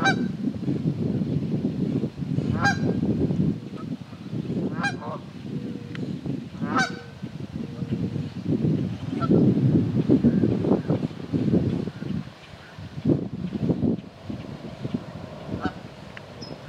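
Canada geese honking: about four loud calls, roughly two seconds apart, in the first half. A continuous low rumble runs underneath.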